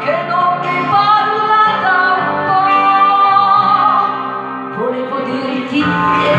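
Karaoke performance of an Italian pop ballad: a woman sings long held notes into a handheld microphone over a backing track.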